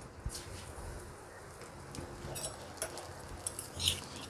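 Butter melting on a hot iron tawa, giving a faint, scattered crackle.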